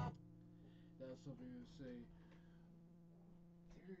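Near silence with a faint, steady low hum, and faint mumbled speech about a second in.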